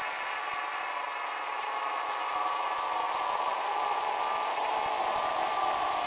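A sustained, eerie sound effect with many ringing metallic tones, like the long shimmer of a struck gong, holding steady with a slight swell.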